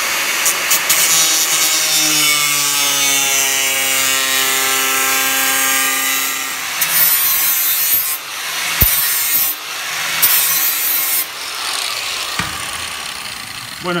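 Angle grinder cutting through 2 mm iron sheet: a steady whine whose pitch sags slightly as the disc bites. In the second half come three short, harsh bursts of cutting with brief let-ups between them.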